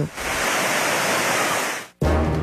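Floodwater from an overflowing river rushing past: a steady rush of water noise that cuts off suddenly near the end.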